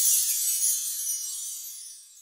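A high, glittering shimmer sound effect for an animated logo, like a wash of small bells, fading steadily away.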